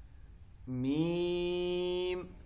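A man's voice reciting the Arabic letter name Meem in Qur'anic style, drawn out as one long, steady chanted note. It begins about two-thirds of a second in, after a short pause.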